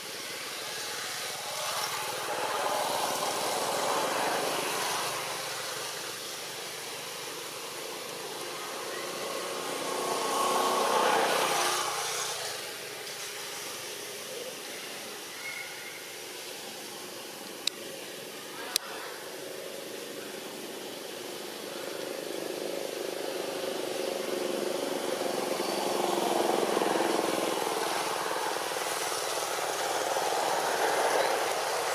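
Motor traffic going by, the noise swelling and fading twice, with two sharp clicks about halfway through.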